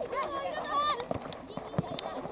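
Boys' voices shouting and calling out during a soccer game, with a sharp thud of a ball being kicked near the end.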